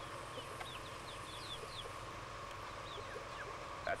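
A stream running steadily, with many short high bird chirps scattered over it.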